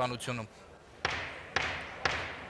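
Two sharp knocks about half a second apart, each ringing out with a long echo in the large arena hall.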